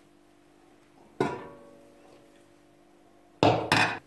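Stainless steel cooking pot and its lid clinking. A single metallic clink about a second in rings and dies away slowly, and a louder double clatter comes near the end as the pot is handled.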